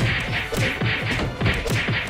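A rapid, even run of fight-style punch and whack impacts, about four a second, each a sharp hit with a low thump, over a scuffle between two people.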